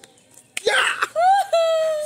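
A man laughing: a short breathy burst about half a second in, then one long high-pitched held note of laughter lasting about a second.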